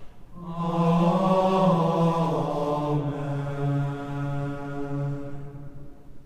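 A sung two-note "Amen" closing the Benediction: a higher note stepping down to a lower one that is held long, then dies away in the room's reverberation near the end.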